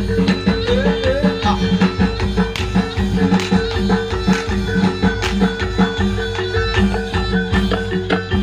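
Live Javanese jaranan band music: rapid hand-drum strokes over sustained pitched instrument notes, playing steadily and loudly.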